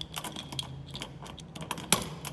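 Irregular light clicks and taps in quick succession over a low steady hum, with a sharper, louder click near the end.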